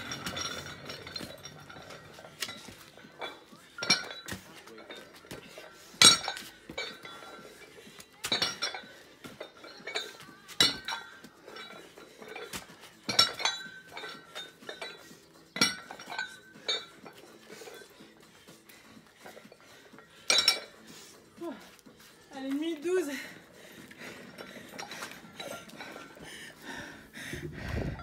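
Metal-plated adjustable dumbbell knocking and clinking against stone paving as it is set down and picked up over repeated reps, a sharp clink every two seconds or so.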